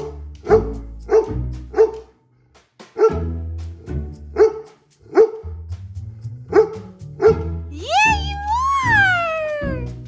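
An 11-year-old English cream golden retriever barking: a string of single barks about half a second to a second apart, with a few short gaps. Near the end comes one long howl that rises and then falls, all over background music.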